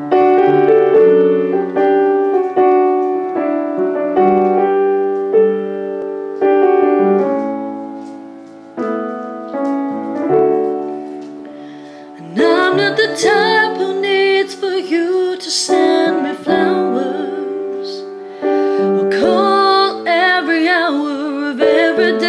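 Piano playing a slow introduction of held chords, each left to fade before the next. About halfway through, a woman starts singing over it in a slow ballad.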